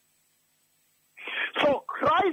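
Near silence for about a second, then a person's voice begins, opening with a short breathy noise.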